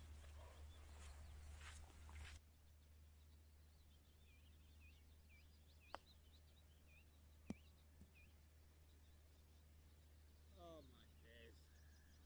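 Mostly near silence with faint bird chirps. About six seconds in comes a single faint sharp click: a distant 60-degree wedge striking a golf ball on a chip hit fat. A second sharp click follows about a second and a half later.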